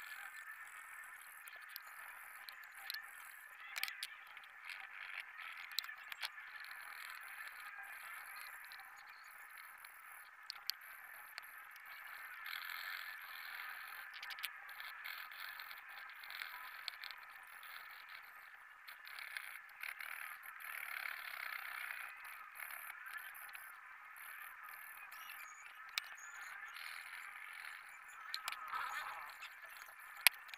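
Pencil shading on drawing paper: a steady, fine scratching with a few light ticks scattered through it.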